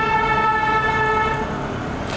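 A vehicle horn held in one long, steady blast over a low traffic rumble, fading out near the end.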